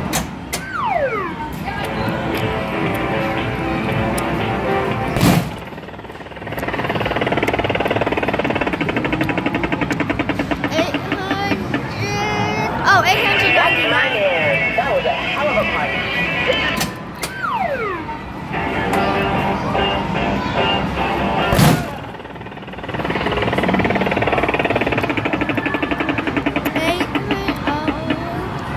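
Arcade boxing machine playing its electronic music and sound effects, with a falling tone, then a punch landing on the strike bag as a sharp thump. The same sequence comes twice, the punches about 16 seconds apart.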